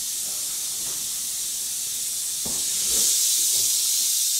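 Rattlesnake rattling: a steady high buzz that grows louder about three seconds in, with a couple of soft knocks.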